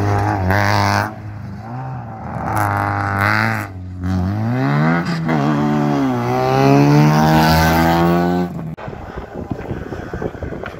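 A rally car's engine revving hard under full throttle, climbing in pitch and dropping sharply at each upshift as it accelerates through the gears. The sound breaks off abruptly near the end.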